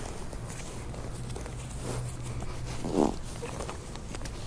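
A nylon compression stuff sack packed with an air mattress being cinched down by hand, its straps pulled tight with faint scuffing, and one short straining grunt about three seconds in.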